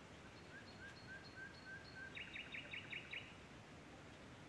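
A bird singing faintly over a steady background hiss: a row of short, soft whistled notes, then about halfway in a quick series of about six louder, sharply descending notes.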